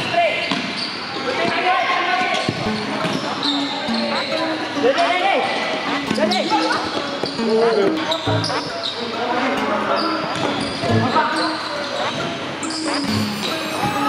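Futsal ball being kicked and bouncing on an indoor court, knocks coming every second or so, with players shouting to each other. It echoes in the large hall.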